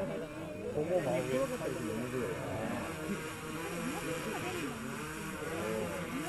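Small multirotor drone hovering overhead, its propeller hum wavering in pitch as the motors adjust, over the murmur of a waiting crowd.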